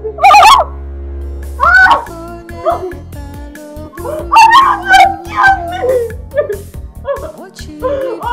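A woman wailing and crying out in distress in loud, broken cries over a steady background music score.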